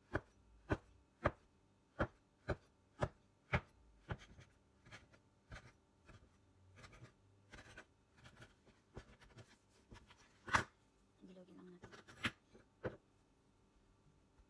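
Curved metal dough cutter chopping through a log of bread dough and knocking on a cutting board: a quick run of sharp chops about two a second, then slower, scattered ones, the loudest about ten and a half seconds in.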